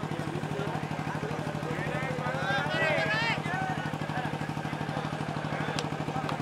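An engine running steadily at idle, a low hum with a fast, even pulse, while a crowd's voices rise briefly about two to three seconds in.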